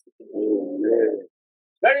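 A person's drawn-out hum, a voiced "mmm" held for about a second, wavering slightly in pitch.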